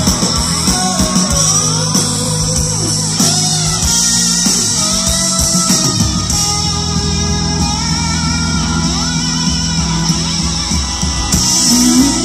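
A rock band playing live in an instrumental passage: an electric guitar lead with notes bending up and down over sustained bass and drums.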